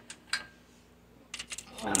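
A few light metallic clicks and taps from hand tools being handled: one about a third of a second in, a quick cluster of them later. A short spoken 'Wow' follows near the end.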